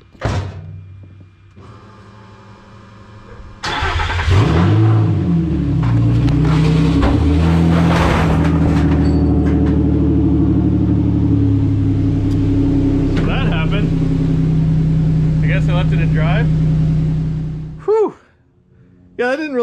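The Xterra race truck's swapped-in Nissan Titan V8 whirs quietly for a couple of seconds, then fires with a sudden jump in loudness about three and a half seconds in and runs steadily before cutting off abruptly just before the end. It is started while the transmission is in drive.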